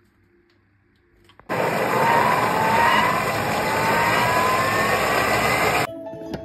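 Vorwerk Thermomix motor starting about a second and a half in and blending hummus at high speed: a loud whirring whine that rises steadily in pitch as the blades speed up. It cuts off suddenly near the end.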